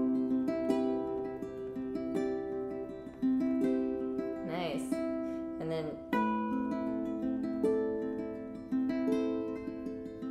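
Harp ukulele played acoustically: a fingerpicked melody on the ukulele strings over a low wound harp string that is plucked once and keeps ringing under the whole phrase, showing its long sustain. A fresh low note is plucked about six seconds in.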